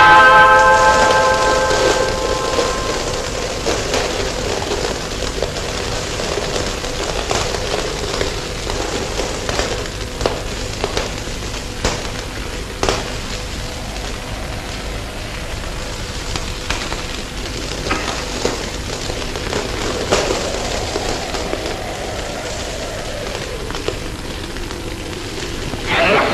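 Steady hiss and crackle of an old film soundtrack with scattered clicks, after a held musical note that fades out over the first two seconds.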